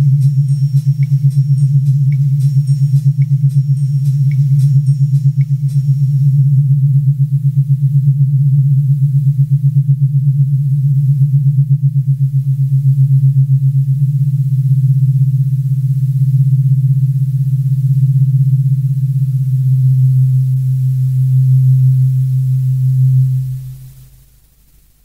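Synthesizer holding a loud, sustained low drone with a fast wobble in its loudness. Faint ticks come about once a second over the first six seconds, and the drone dies away quickly near the end.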